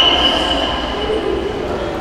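A whistle: one long, steady, high-pitched blast that fades away in the first second and a half, with background voices of the crowd in the hall underneath.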